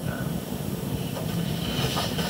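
Steady room noise: an even hiss with a low hum and no speech.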